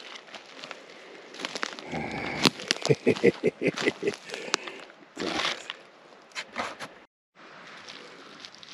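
Crackling and rustling of dry pine needles and fallen leaves, with a wicker basket handled as a mushroom is put into it; the crackles come thickest in the middle. The sound cuts out completely for a moment near the end.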